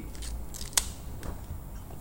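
Quiet handling noise from a smartphone in the hands: one sharp click about three-quarters of a second in and a fainter tick a little later, over low room hum.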